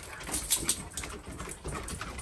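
Footsteps and dogs' claws on wooden porch decking: a run of light clicks and taps, thickest about half a second in.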